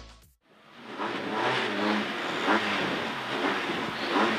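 Cabin sound of a Renault Clio N3 rally car idling at a standstill, fading in after a brief silence near the start and holding steady.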